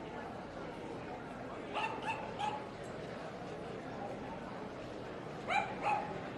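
A small dog yapping: three quick high-pitched yips about two seconds in, then two more near the end, over steady crowd chatter.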